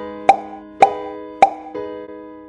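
Three short pop sound effects, evenly spaced about half a second apart, over soft electric piano background music.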